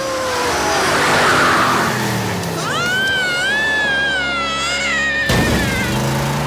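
Cartoon monster truck jump sound effects. The engine's pitch falls away with a rushing whoosh as the truck flies, a long wavering high tone follows, and then comes a sudden loud landing thud about five seconds in, with the engine running low afterwards.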